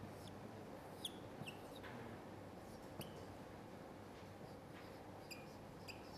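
Marker writing on a whiteboard, its strokes giving short high squeaks, a few about a second in, one at three seconds and several near the end, over a faint steady room hum.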